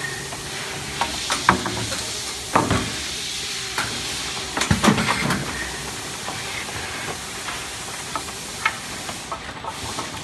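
Steady hiss and hum of running packaging machinery, broken by sharp clatters and knocks of wooden trim boards set down and slid in a stainless-steel conveyor trough, with a burst of several knocks about five seconds in.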